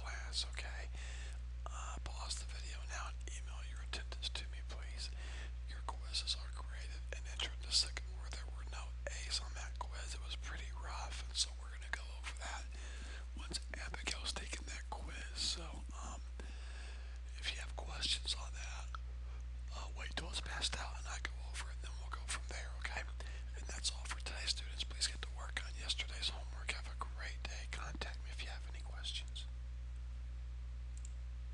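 Low whispering and soft murmured voices with many small clicks and rustles, over a steady low hum.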